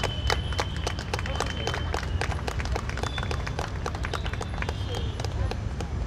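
Scattered hand clapping from a small audience, a few irregular claps a second, over a steady low rumble, with a thin high steady tone in the first couple of seconds.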